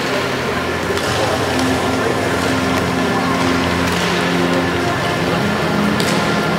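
Music with held bass notes that change every second or two, over a large hall's crowd babble, with a couple of sharp knocks.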